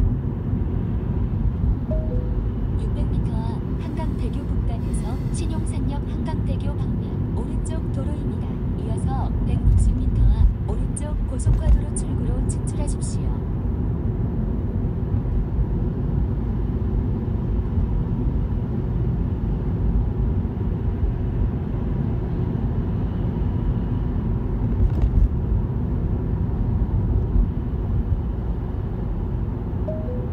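Steady low road and tyre noise inside a Tesla's cabin while driving, with no engine note. A run of faint, sharp high clicks comes through in the first half.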